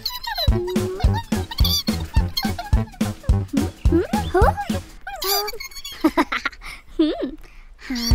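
Playful children's cartoon music with squeaky sliding sound effects and a quick run of light beats, about four a second. The beats stop about five seconds in, leaving a few scattered squeaky slides.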